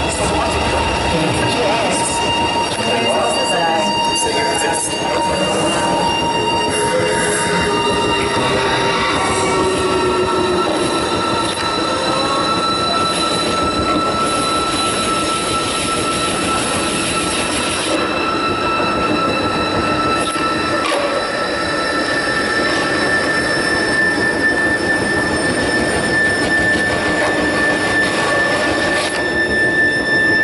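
Electronic dance score played over the stage speakers: a dense noisy texture with several sustained high tones that shift in pitch and change over time, giving a grinding, screeching, industrial sound.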